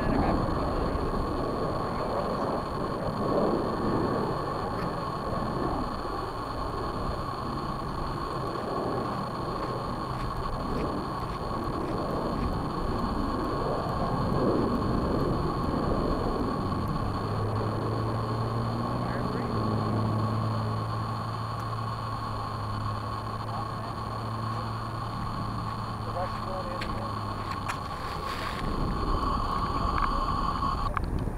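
Wind buffeting the microphone of a camera resting on the ground, over a steady high-pitched electronic whine. A low steady hum joins about halfway through and stops shortly before the end.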